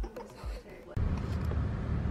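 Background music with a beat tails off during the first second, then gives way abruptly to a steady low rumble of car road noise heard inside the cabin.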